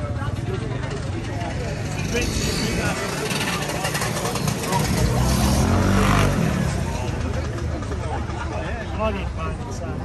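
A motor vehicle engine passing close by, growing louder to a peak about six seconds in and then falling away, over people talking.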